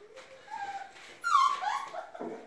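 Bernese mountain dog puppies whining while eating at their bowls: a few short, high-pitched whines. The loudest comes just past halfway and falls, then rises in pitch.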